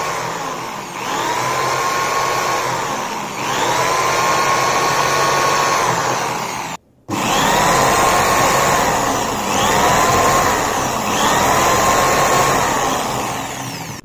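Corded Reliance electric drill driving a mixer's universal motor that has been converted into a generator. It runs in about five spells, each time its whine rising as it speeds up, holding steady, then falling away as it slows. There is a brief dropout about halfway through.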